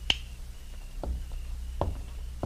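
Radio-drama sound effect of a wall light switch flicked off: one sharp click, followed by two softer knocks about a second apart over a low steady hum.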